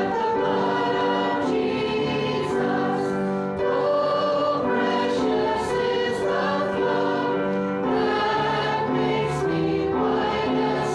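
A church congregation singing a hymn together, holding long notes that change every second or so.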